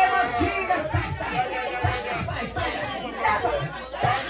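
Speech: a man praying aloud, fast and fervent, into a microphone.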